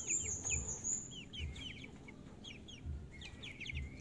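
Young, half-grown chickens peeping: a quick string of short, high, falling cheeps, several a second, coming in uneven runs.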